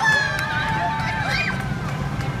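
High-pitched screaming from riders on a swinging amusement ride, loudest at the start and dying away within about a second and a half, over a steady low hum.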